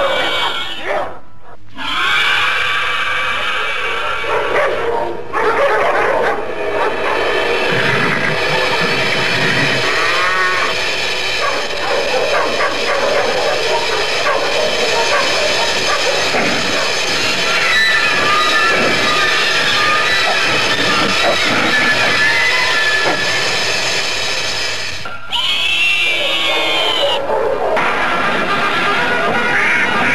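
Film soundtrack of orchestral score with dogs barking and yelping over it. It breaks off abruptly a few times at edits between scenes.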